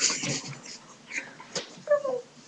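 A boy's breathy giggling laughter in short bursts, with a brief falling squeak of voice near the end.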